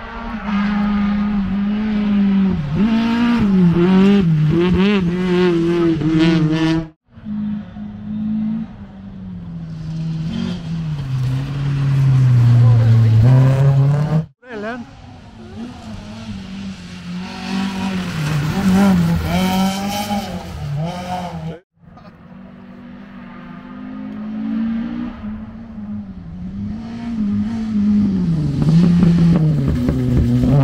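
Rally cars at speed on a gravel special stage, in four short segments cut apart abruptly: each engine revs hard, its pitch climbing and dipping repeatedly as the driver accelerates and lifts through gear changes, with tyre noise on the loose surface.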